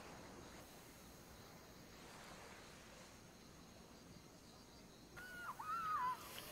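Near silence with a faint hiss for about five seconds, then a woman starts screaming, a high wavering cry that rises and falls.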